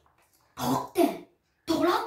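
A boy coughing: two quick pairs of harsh coughs, the second pair ending right at the close.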